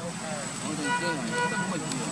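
People's voices talking in the background over a steady hum. About a second in, a steady pitched tone sounds for about a second.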